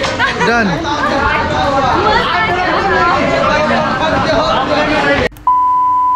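Several people talking and laughing close by. About five seconds in, the voices cut off abruptly, and a steady high test-tone beep starts: the tone that goes with TV colour bars.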